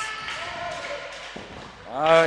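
Handball game in a sports hall: a distant voice calling in the first second, then a single knock of the handball on the hall floor a little over a second in, over steady hall noise.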